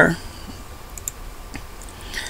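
A few faint, scattered clicks over a low steady hum.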